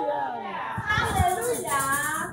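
Several voices of a church congregation shouting and exclaiming over one another, with no clear words.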